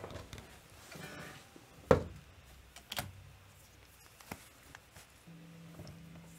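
A few scattered sharp clicks and knocks over a faint background, the loudest about two seconds in, then a steady low hum comes in about five seconds in.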